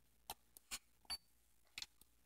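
Faint, irregular light clicks, about five over two seconds, as glitter is tapped out of its container into a plastic cup.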